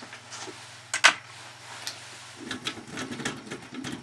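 Small clicks and a sharp tick about a second in over a low steady hum; from about halfway the hum gives way to low rustling handling noise with scattered clicks.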